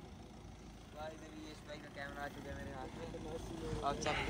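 Low, steady rumble of the Audi Q5 SUV's engine as it crawls up a dirt slope, with faint voices calling out a second in and again near the end.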